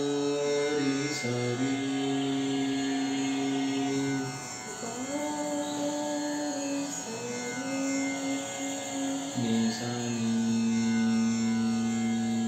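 Voices singing a slow devotional chant melody in Raga Pilu as long-held notes, about five phrases of two to three seconds each, sliding up or down in pitch between them.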